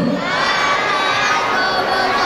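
A crowd of young children calling out together, many high voices at once, answering the spoken Islamic greeting.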